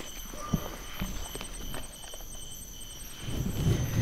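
Night insects chirping steadily in a fast high pulse. Rustling and soft knocks of gear being handled in a bag grow louder near the end.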